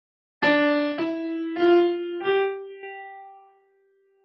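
Piano playing four rising notes one after another, the last held and dying away: the notes of a reconstructed Neanderthal bone flute, steps of a diatonic scale.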